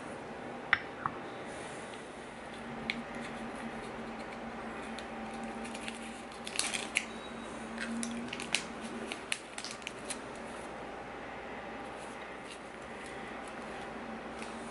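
A ceramic mug set down on a stone coaster with a single sharp click, then small crinkling and ticking sounds of a paper candy wrapper being unwrapped and handled, over a low steady hum.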